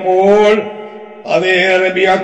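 A man's voice chanting in a long, drawn-out melodic line. One held note fades away after about half a second, and the chanting resumes after a short gap.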